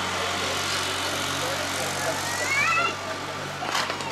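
Open-air ambience with steady background noise and indistinct distant voices, a short rising call about two and a half seconds in, and one sharp knock near the end.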